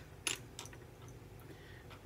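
A few light clicks and taps as she handles the eyeshadow palette and brush, picking up a dark brown shadow, over a faint low room hum.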